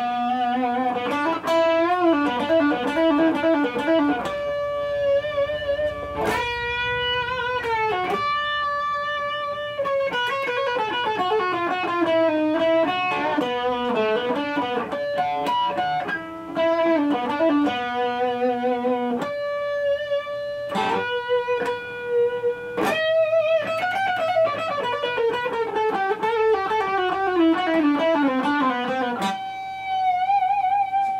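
PRS electric guitar playing a slow melodic passage of sustained single notes with wavering vibrato, mixing in ringing natural harmonics. Near the end a long note glides down in pitch over several seconds.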